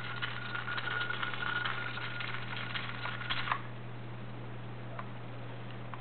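A faint high electrical whine with rapid fine ticking from the RC buggy's servo and speed controller, cutting off suddenly about three and a half seconds in, over a steady low hum.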